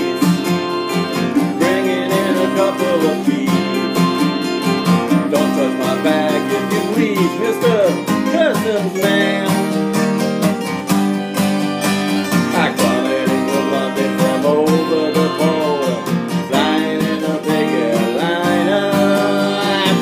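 Acoustic guitars strumming a steady country-folk rhythm in an instrumental break between verses, with a lead melody bending and sliding over it.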